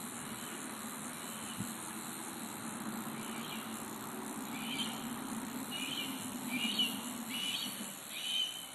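Steady outdoor insect drone, high-pitched, with a handful of short high chirps in the second half.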